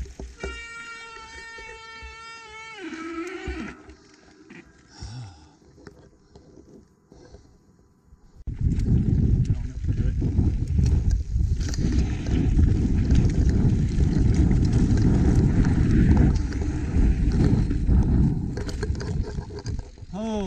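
A long, steady high-pitched tone near the start that falls away at its end; then, from about eight seconds in, a mountain bike descending fast on a dirt trail, with loud wind rumble on the mic and the tyres and frame rattling over the rough ground.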